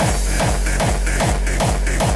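Electronic dance music cutting in abruptly, with a steady deep bass and a pounding kick drum about four times a second.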